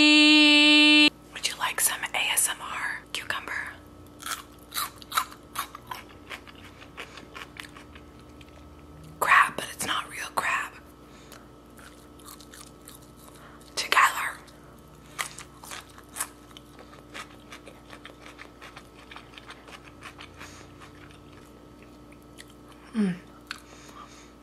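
Close-up chewing of a mouthful of sushi right at the microphone, ASMR-style: wet mouth clicks and soft crunches, with a few louder bites. A loud steady tone cuts off about a second in.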